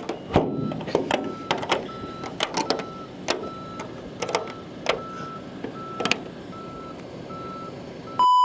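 A vehicle's reversing alarm beeping steadily, about one and a half beeps a second, over a run of sharp clicks and knocks.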